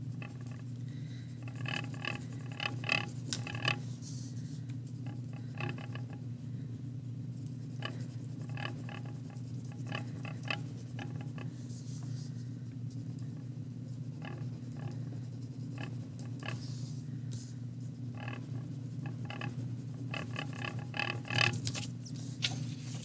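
Wax crayon scratching back and forth on paper in runs of quick strokes, over a steady low hum.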